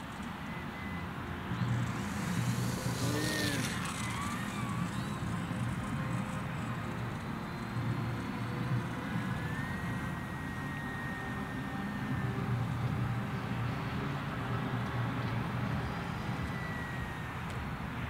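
HobbyZone Apprentice STOL S ultra-micro RC airplane's small electric motor and propeller whining in flight, the pitch rising and falling several times as it moves about, over steady low outdoor background noise.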